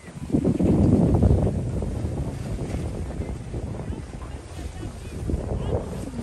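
Wind buffeting the microphone as a low rumble, with a strong gust starting about a third of a second in that eases after a second or so, then a steadier lower rumble.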